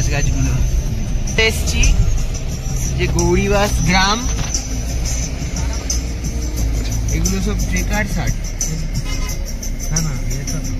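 Steady engine and road rumble of a car driving, heard from inside, with background music and a voice now and then over it.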